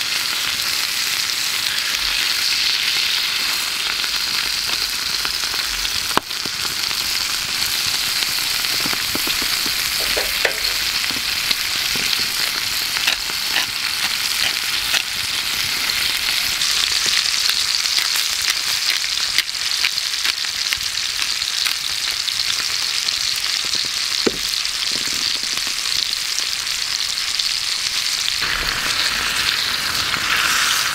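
A thick wagyu steak sizzling steadily in a skillet over a wood fire, with a few sharp pops along the way.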